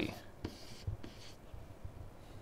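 Faint scratching of a stylus writing on a tablet, two short strokes in the first second and a half as the figure "50°" is written.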